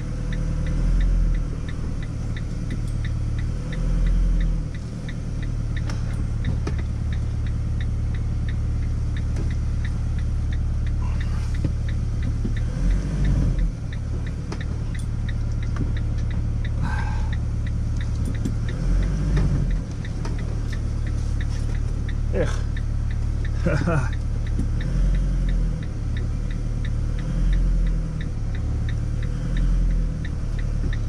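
Motorhome engine running, heard from inside the cab, swelling in several brief surges as the vehicle is eased slowly into a tight parking spot. A faint, steady ticking runs along with it.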